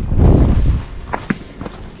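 A hiker's footsteps on dry dirt and leaf litter: a heavy low scuffing in the first second, then two sharp clicks a little over a second in.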